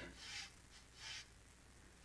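Two faint, brief scratchy strokes of a calligraphy brush laying masking fluid on cold-pressed watercolour paper, the first near the start and the second about a second in.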